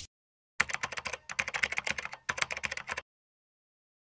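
Keyboard-typing sound effect in an animated logo sting: a quick, irregular run of clicks starting about half a second in and stopping about three seconds in.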